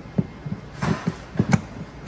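30 amp RV shore-power plug being seated in its inlet and the locking collar turned: several short plastic clicks and knocks with a brief scrape, the sharpest knock about a second and a half in.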